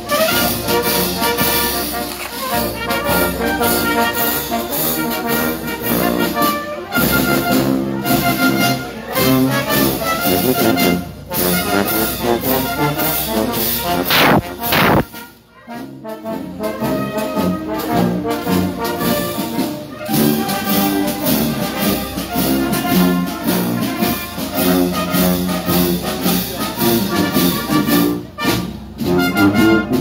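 Italian town brass band playing a march on the move: trumpets, trombones, baritone horns and sousaphone over drums. The music breaks off briefly about halfway through.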